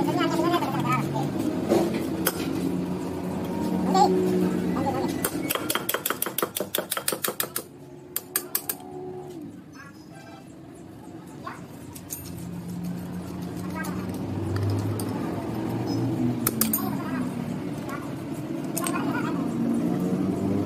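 Slide-hammer puller knocking a fuel injector out of a three-cylinder diesel cylinder head: a fast run of sharp metal clanks, about five a second for some two seconds, then a few more strikes. Voices talk before and after the strikes.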